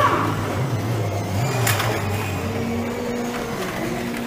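Small electric motors of 1/24 scale slot cars whirring steadily as they lap the track, with a single sharp click about a second and a half in.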